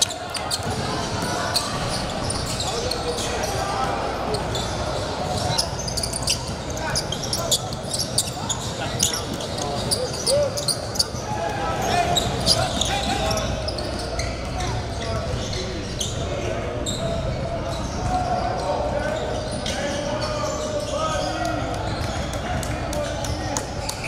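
Basketball bouncing on a hardwood gym floor as a player dribbles, a run of short sharp bounces, over the chatter of many voices echoing in a large gym.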